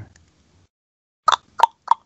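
Three short pops about a third of a second apart after a near-silent gap: chopped fragments of a voice coming through a video-call connection that keeps cutting out.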